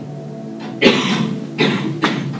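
Background music from a film played over the room's speakers, with two short, sharp bursts cutting through it, a little under a second in and again just before the end.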